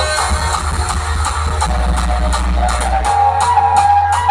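Electronic dance music playing loudly through a large outdoor DJ speaker rig, dominated by a heavy, steady bass. A held synth note comes in about three seconds in.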